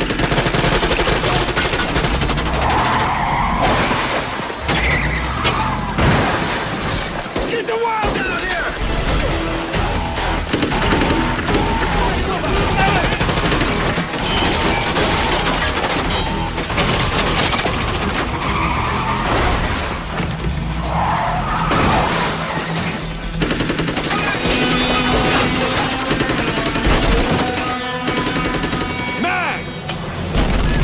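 Action-film soundtrack: rapid bursts of gunfire over score music, with car noise and a car skidding.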